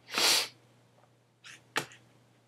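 A person's quick, noisy breath close to the microphone, just after the start. Later, near the end, there are two short clicks.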